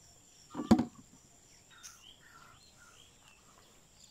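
A single short knock ending in a sharp click under a second in, then faint chirps of small birds over a quiet outdoor background.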